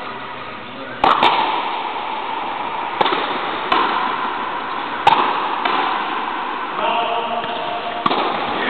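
Frontenis rally: sharp cracks of the small rubber ball struck by rackets and rebounding off the fronton wall, about five hits at uneven intervals over the first five seconds, each ringing with echo off the court walls. A man's voice is heard faintly near the end.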